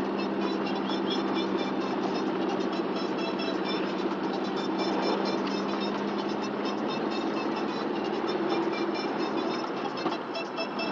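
Steady engine and road noise of a car being driven, heard from inside its cabin, with music playing underneath.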